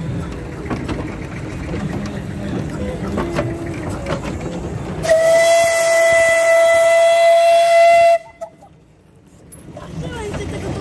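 Steam whistle of a 1925 Borsig narrow-gauge steam tank locomotive, sounding one long, loud blast on a single steady pitch that starts about halfway through and cuts off sharply about three seconds later.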